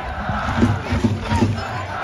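Football supporters chanting together over a quick, steady drum beat.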